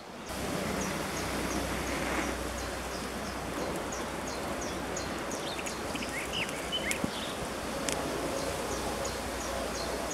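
Outdoor woodland ambience: a steady hiss with a bird repeating a short high call two or three times a second, a few lower chirps about midway, and a couple of faint clicks.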